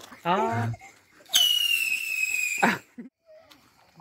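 A whistling firework (chiflador) going off: one loud, high whistle that falls slightly in pitch over about a second and a half and then cuts off suddenly. A short shout comes just before it.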